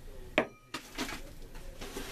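Hard salvaged objects being handled: one sharp clink about half a second in, then lighter knocks and rattles of metal and glass junk.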